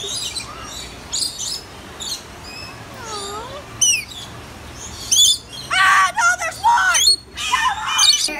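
Rainbow lorikeet chirping and screeching in short high calls, with one sharp falling screech about four seconds in. A person's voice comes in over the last couple of seconds.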